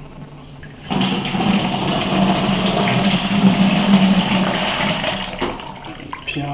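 Watermelon juice poured from a plastic jug through a metal sieve into a plastic bucket: a steady splashing pour that starts about a second in and tails off near the end.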